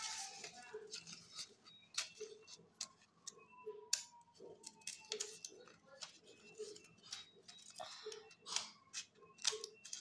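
Faint, irregular clicks and light knocks of objects being handled, with short low thuds between them.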